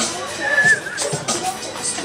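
Hip hop background music with people's voices, and a brief high-pitched squeal-like call about half a second in.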